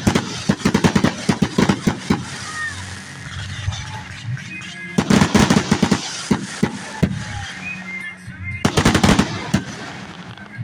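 Aerial fireworks going off in rapid volleys of bangs and crackles: a quick string of reports near the start, another about five seconds in, and a third near the end.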